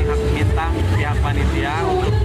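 A man speaking in an interview over a steady low background rumble.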